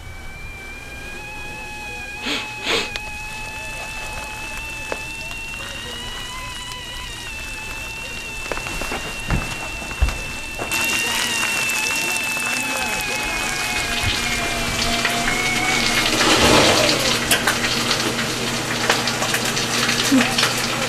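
Stovetop kettle whistling: a steady high tone that wavers slightly in pitch and dies away about sixteen seconds in. From about ten seconds in, a hiss of food frying in a pan joins it, with a few knocks along the way.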